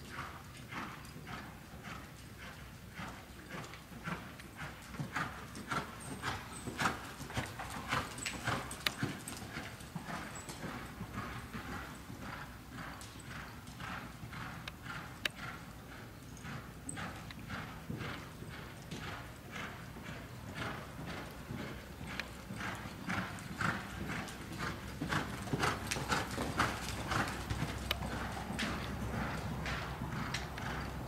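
Hoofbeats of a Quarter Horse mare being ridden on the dirt footing of an indoor arena, falling in a steady, rhythmic clip-clop. The hoofbeats grow somewhat louder toward the end.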